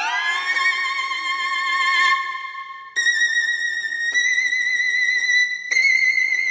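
Solo violin playing slow, held notes with vibrato: a note slides up at the start and fades away about three seconds in, then a high note is held, stepping slightly higher near the end.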